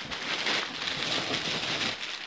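Clear plastic packing material crinkling and rustling as it is pulled out of a cardboard box and tossed aside.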